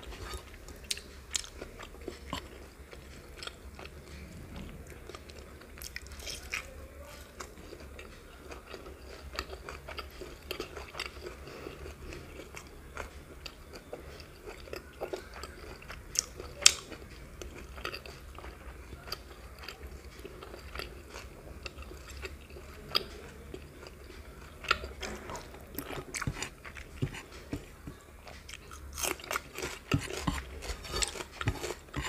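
Close-miked chewing of rice and curry eaten by hand, with many small wet mouth clicks and smacks and fingers working the rice on the plate; one louder click about 17 seconds in, over a faint low hum.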